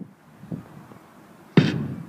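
A hip-hop backing beat starting up: a low hum with a couple of faint thumps, then a loud drum hit about one and a half seconds in.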